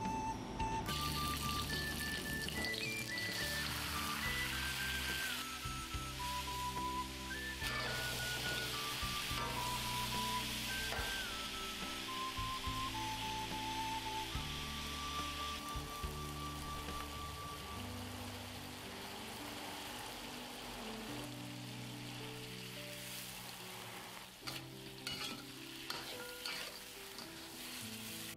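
Chicken pieces frying in hot camellia oil in an iron wok, sizzling, stirred and turned with a metal spatula. The sizzle starts about a second in and eases somewhat past the middle.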